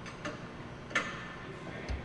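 A few sharp clicks, the loudest about a second in, with a low knock near the end, from a crash-test dummy being handled and adjusted in a test rig.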